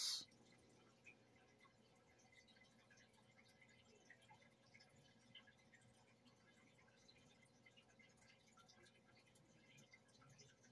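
Near silence: room tone with a faint steady hum and a few tiny, faint ticks.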